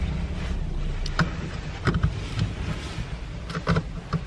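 Steady low rumble of a car heard from inside its cabin, with a few short sharp clicks.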